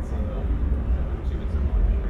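A faint, off-microphone voice asking a question, over a steady low rumble of room noise.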